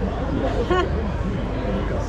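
Indistinct background chatter of people nearby, with one voice briefly standing out about a third of the way in, over a steady low hum.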